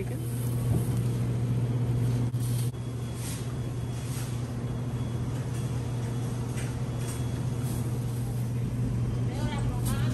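Steady low hum of a grocery store's background machinery, such as refrigerated display cases, with scattered light clicks and rattles.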